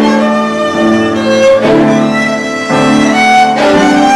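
Solo violin playing a bowed melody of sustained notes that change every half second to a second, with lower held notes sounding beneath it.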